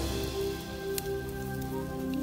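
Background music of held tones over a crackly rustling of cut German grass and a plastic sack as the grass is stuffed into the sack by hand. There is one sharp click about halfway through.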